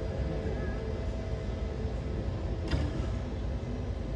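Steady low rumble of airport apron noise, with a faint steady hum running through it and a single sharp click about two and a half seconds in.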